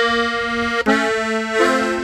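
Gabbanelli button accordion in F playing a slow chromatic embellishment: a held chord, then a fresh chord attacked just under a second in, with another note joining near the end.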